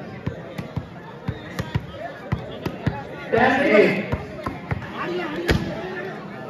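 A scatter of sharp, irregular knocks and thumps, the loudest about five and a half seconds in, with a man's shout near the middle.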